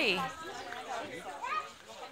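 Voices of a small child and adults chattering without clear words, opening with a child's high squeal that drops sharply in pitch.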